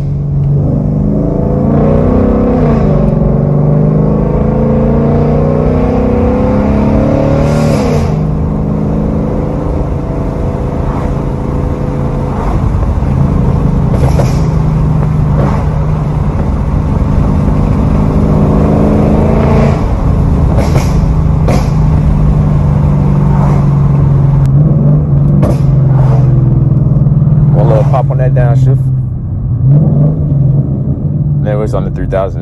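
Ford Mustang GT's 5.0-litre V8 heard from inside the cabin, revving up and falling back and cruising steadily, with sharp exhaust pops and crackles on let-off and downshifts from its burble tune. A few single pops come early, and a quick run of them comes in the last few seconds as the car slows.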